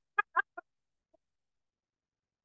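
The last three short bursts of a man's hearty laugh, each weaker than the one before, dying away within the first second.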